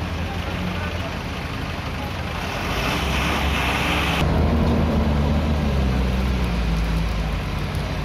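Heavy truck's diesel engine running as the truck passes close by on a dirt road, its steady low drone growing louder after about halfway. A hissing rush about three seconds in stops abruptly.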